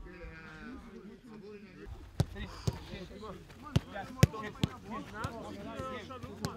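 Footballs being kicked in a passing drill on a grass pitch: about half a dozen sharp, irregularly spaced kicks, the loudest a little past four seconds in.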